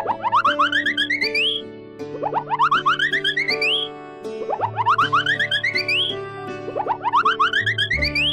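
Cartoon sound effect of quick bouncy blips climbing rapidly in pitch, in four runs about two seconds apart, over steady children's background music. These are the sounds that go with the balls dropping into the truck bed.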